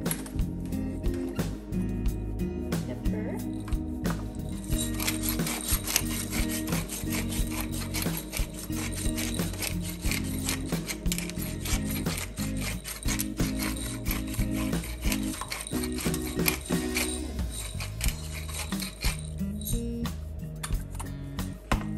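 Hand-twisted pepper mill grinding peppercorns over fish fillets, a dense run of fine grinding clicks that starts about five seconds in and stops a few seconds before the end, over background music.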